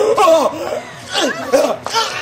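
A man's loud, exaggerated laugh in two bursts, his voice swooping up and down in pitch.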